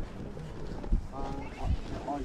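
Faint background voices of people talking, with a couple of low thumps.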